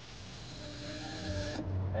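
Line running off a game-fishing reel as a trolled bait is let out, a whirring that builds and then stops abruptly about a second and a half in. A boat engine's low drone runs underneath.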